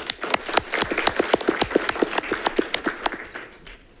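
Audience applauding: many hands clapping together, dying away near the end.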